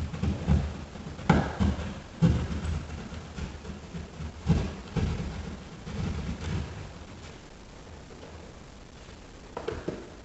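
Hand drywall saw sawing through drywall in short, irregular strokes, angled downward to find the top edge of an electrical box buried behind the sheetrock. The strokes stop about seven seconds in.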